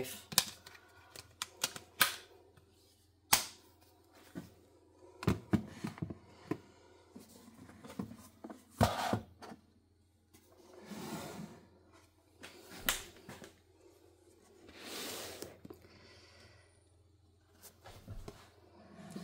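Sharp clicks and knocks of a hard-cased phone being set onto and shifted on a plastic wireless charging stand, several in the first half. Later come a few softer, longer rustling swells.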